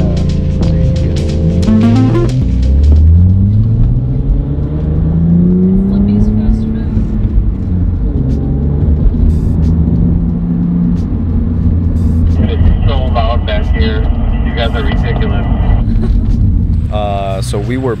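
Car engine heard from inside the cabin, accelerating in two long pulls with its pitch rising, then settling into a steady drone while cruising.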